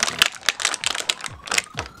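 Thin clear plastic bag crinkling and crackling in the fingers as a small plastic action-figure hand is worked out of it, in a quick irregular run of crackles.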